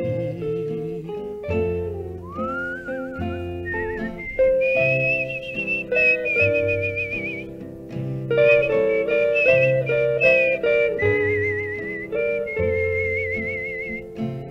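A whistled melody with a wide vibrato, sliding up into it about two seconds in, over acoustic rhythm guitar, Gibson ES-295 electric lead guitar and plucked upright bass: the instrumental break of a 1954 mono studio recording of a slow ballad.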